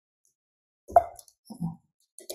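A few soft taps on computer keys: a sharper one about a second in, then two quieter ones about half a second later.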